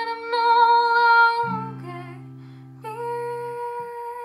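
A young woman sings two long held notes, the second starting about three seconds in, over an acoustic guitar. A chord is strummed about one and a half seconds in and rings beneath her voice.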